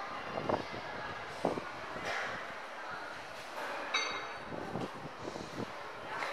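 A few dull thuds and knocks over faint voices and hall noise, with a brief high squeak-like tone about four seconds in.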